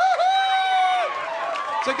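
A man's voice mimicking Mexican radio music into a microphone: a high, held, nasal note with a wavering start, running about a second, then a few falling, sliding notes.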